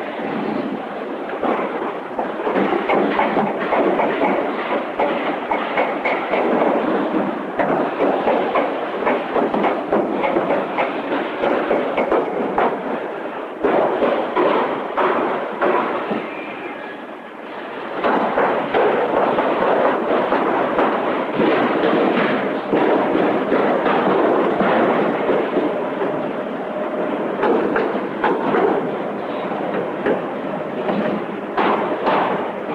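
Car assembly-line din: continuous machinery noise thick with metallic clanks and knocks from bare steel car bodies and equipment.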